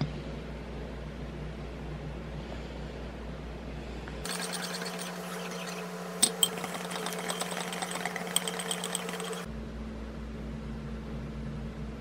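Small metal wire whisk clattering rapidly against the side of a bowl while whisking hot cereal, with a few sharper clinks, for about five seconds in the middle. Before and after it there is a steady low hum.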